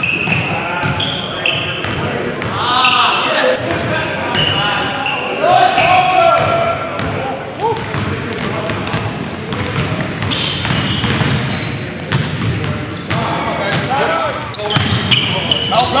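Live basketball game sounds in a gymnasium: a basketball bouncing on the hardwood floor with sharp knocks, amid players' indistinct calls and shouts.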